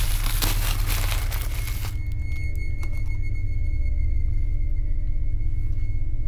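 Background music with a steady bass line, and during the first two seconds the crinkle and tearing of a plastic-wrapped package being pulled open to free a small jar.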